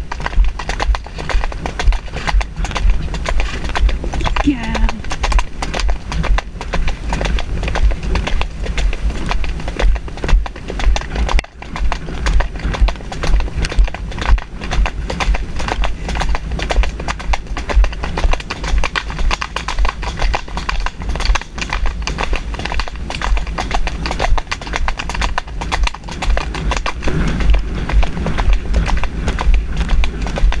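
Ponies' hooves clip-clopping steadily on a dry dirt track, heard from on horseback, over a steady low rumble.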